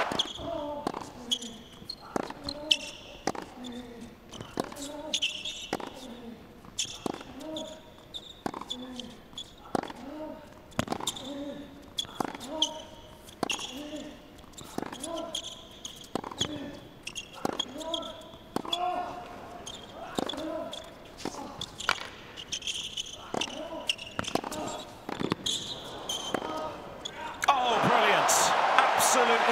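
Long tennis rally on an indoor hard court. The ball is struck by the rackets about every second and a bit, each hit with a short grunt from the player, and shoes squeak on the court between shots.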